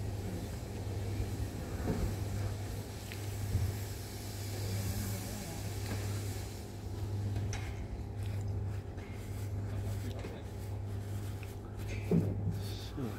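A steady low mechanical hum under faint background noise, with a few small clicks.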